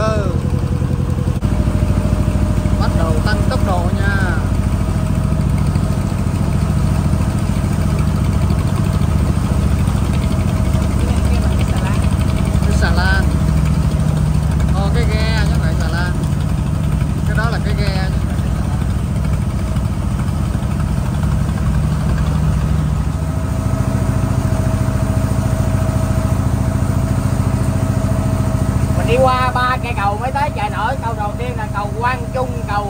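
A small river boat's engine running steadily, its note shifting about a second in and again near the end, with voices heard over it at times.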